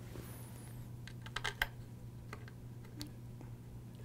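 Light clicks and ticks of the Noctua NH-L9i heatsink's mounting screws being threaded in by hand from the back of a motherboard: a short cluster about a second and a half in, then a couple of single clicks, over a steady low hum.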